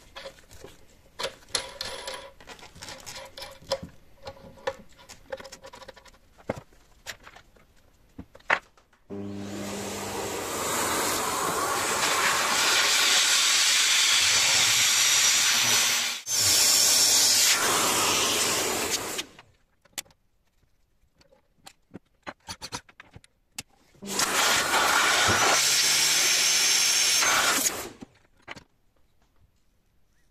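A corded electric tool's motor and fan running in two bursts: about ten seconds of steady running with a brief dip near the middle, then about four seconds in which a whine rises as it speeds up. Light clicks and handling knocks come before the first burst.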